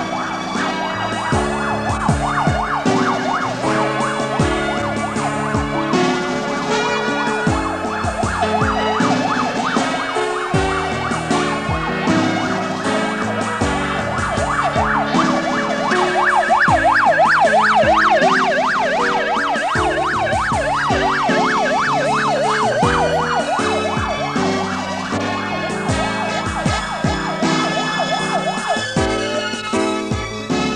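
Motorcade escort siren yelping in a fast up-and-down wail, loudest about halfway through and fading near the end, over background music with a steady beat.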